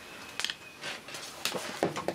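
Light clicks and knocks of equipment being handled, about four spread through the two seconds, with a faint thin high tone in the first part.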